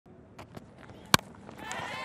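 A single sharp crack of a cricket bat edging a fast delivery about a second in, from a false shot off a fast bowler that carries for a catch. Background crowd noise begins to rise just after it.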